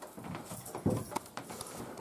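Handling noise from a prop gun being passed between two people's hands: a few soft knocks and clicks, the strongest a little under a second in, over faint room tone.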